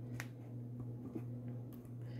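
Quiet pause with a steady low hum, broken by one short light click about a fifth of a second in and a few faint ticks of handling.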